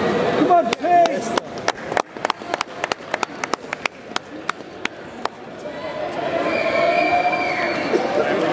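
A few people clapping, about four claps a second, starting about a second in and stopping a little past halfway, as the winner's hand is raised. Voices are heard before and after the clapping.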